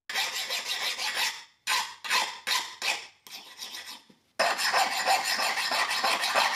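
Round chainsaw file scraped across the edge of a freshly quenched 1084 steel knife blade, a file test showing the blade is very hard. A long stroke comes first, then a run of short quick strokes, softer ones, and a long steady scrape near the end.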